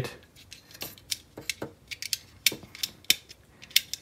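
Hard plastic parts of a Transformers figure's gun accessory clicking and knocking as they are handled and adjusted in the hands: a series of irregular sharp clicks.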